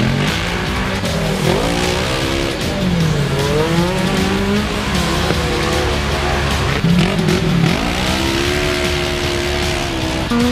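Side-by-side racing UTV engines revving hard as the cars power along a dirt trail. The engine pitch repeatedly drops and climbs again as they shift and get back on the throttle.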